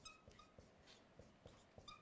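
Faint squeaks of a dry-erase marker writing on a whiteboard: a few short, high squeaks at the start, about half a second in, and near the end.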